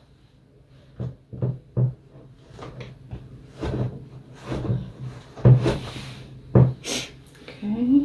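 Dull wooden knocks and taps from hands working a wooden blending board, pressing merino roving down into its carding cloth, about a dozen scattered knocks. Near the end comes a short rustling hiss as a tuft of roving is pulled apart.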